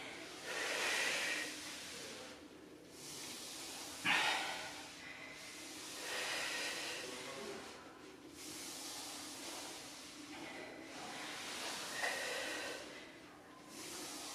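A woman's heavy breathing during an exercise set, one breath coming about every two to three seconds in time with her hands sliding out and pulling back on floor sliders.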